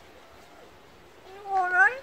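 Pied crow mimicking a human voice saying "you alright, love?": one speech-like, rising call of about half a second near the end, after a second or so of quiet.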